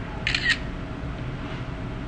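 Steady low hum of the reef aquarium's running pumps and equipment. A short, sharp clicking rasp lasts about a quarter of a second, near the start.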